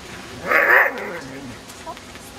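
A dog barking once, loud, about half a second in.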